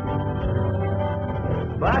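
Background song with guitar and steady instrumental backing; a voice starts singing near the end.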